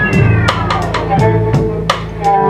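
Live jazz: a violin plays sliding phrases that fall in pitch, over upright bass notes and a drum kit with regular cymbal and drum hits.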